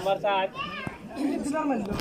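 Crowd of spectators and players shouting and yelling, several high-pitched voices overlapping.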